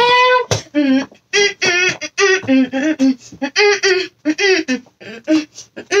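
A child's voice singing a wordless tune: one long held note at the start, then a run of short sung syllables.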